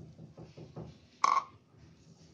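Last few drips of guava juice falling from a plastic measuring cup into a steel pot, then a single short knock just over a second in, as the plastic cup is set down on the counter.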